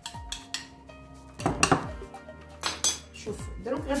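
Kitchen utensils clinking against dishes several times in short clusters while an egg wash of egg, coffee and oil is being prepared, with soft background music underneath.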